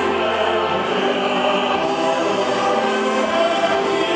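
A song sung with music, voices holding long notes with a choir-like sound.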